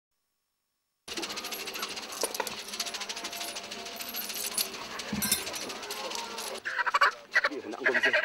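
A second of silence, then a dense, rapid clicking rattle with faint voices beneath it. Near the end it gives way to louder short bursts of a person's voice.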